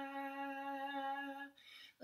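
A woman's voice holding one steady sung note in improvised 'light language' chanting for about a second and a half, then breaking off briefly before the next phrase.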